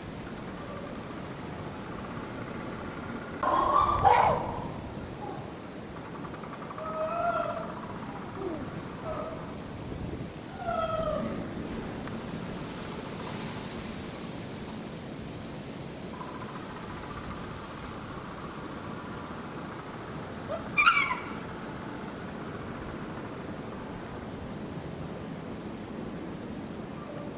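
A few short, pitched animal calls over a steady outdoor hiss. The loudest comes about four seconds in, a couple of quieter ones follow, and a sharp call falling in pitch comes about twenty-one seconds in.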